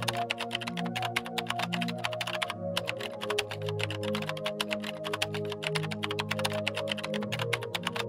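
Rapid computer-keyboard typing clicks, a typing sound effect over soft ambient music. The typing breaks off briefly about two and a half seconds in, resumes, and stops at the end.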